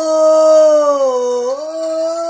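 A man singing one long, wordless held note that slides down in pitch through the middle and climbs back up near the end.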